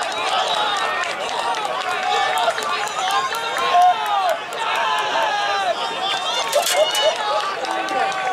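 Many overlapping voices at a soccer game: spectators and players chattering and calling out at once, with no single speaker clear. A couple of sharp clicks stand out about two-thirds of the way in.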